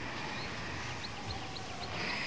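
Faint bird chirps, a scattering of short high notes, over quiet room tone.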